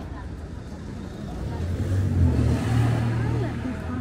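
A car driving past close by, its engine hum and tyre noise swelling to a peak about halfway through and then easing off, with people talking nearby.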